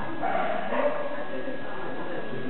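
A dog barking in short yips, loudest in the first second, over background talk.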